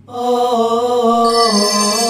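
Wordless chanted vocal in interlude music: a held note that comes in at once, holds, and steps slowly in pitch, with high ringing tones joining about a second and a half in.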